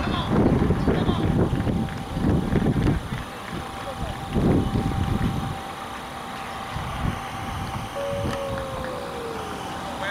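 Outdoor ballpark ambience: wind buffeting the microphone in gusts through the first half, over distant voices of spectators and players. A faint steady tone runs underneath, with a short falling tone near the end.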